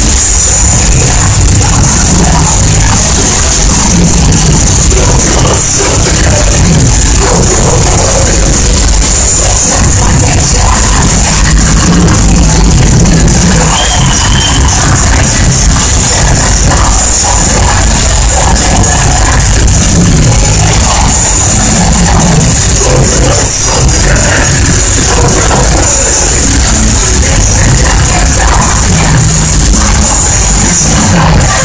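Melodic death metal band playing live: electric guitars and drums at a steady, very loud level, recorded on a phone in the crowd.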